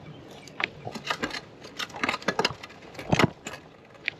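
Irregular clicks and rattles, with a few stronger low thumps about three seconds in: handling and riding noise picked up by a GoPro held in the hand on a moving bicycle.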